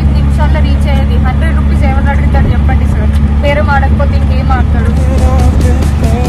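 Auto-rickshaw engine running with a loud, steady low rumble, heard from inside the open cabin while riding, with a voice talking over it.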